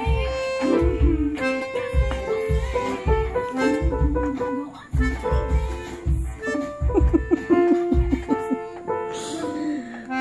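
Recorded music played from a computer: a steady drum and bass beat under a held lead melody, the beat dropping out near the end.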